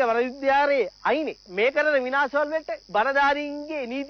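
A person talking on a radio talk show, over a steady high hiss.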